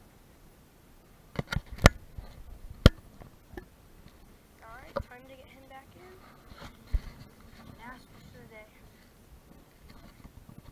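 A few sharp, irregular knocks close to the microphone, bunched in the first few seconds with single ones later, then faint indistinct voices in the background.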